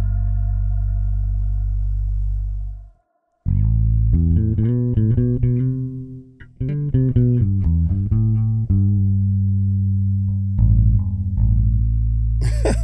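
Five-string electric bass played along with a song: a held low note fades out about three seconds in, then after a brief silence comes a run of short plucked bass notes. One held note clashed with the track and was let go.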